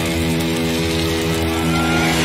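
Intro music: an electric guitar holding one sustained chord.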